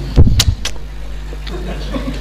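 Three short, loud thumps close to the microphone in the first second, then a faint low hum.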